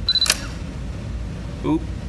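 Brother electronic typewriter reacting to a shorted keyboard-matrix line: a brief high electronic beep overlapping a quick double mechanical clack from the print mechanism, just after the start.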